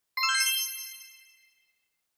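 A single bright electronic chime, a ding of several high bell-like tones struck together, fading out over about a second and a half: a transition sound effect between slides.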